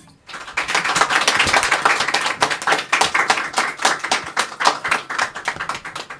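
A group of people clapping: a round of applause that starts a moment after the song's last note and thins out toward the end.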